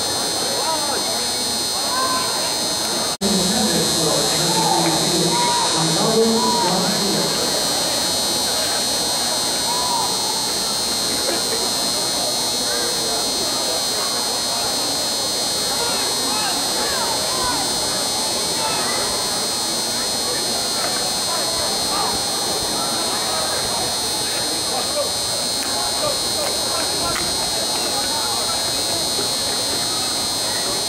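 Spectators' overlapping chatter in the stands, many voices at once, over a steady high-pitched buzz. The sound drops out for an instant about three seconds in.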